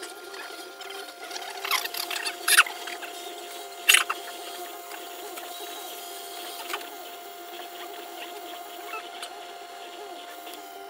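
Desktop diode laser engraver at work: its stepper motors chirp and squeak as the head moves back and forth, over a steady whine. A few louder chirps stand out in the first four seconds, the sharpest about four seconds in.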